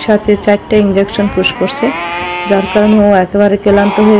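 Domestic cat yowling in distress while held down for an injection, with a long wavering cry in the middle.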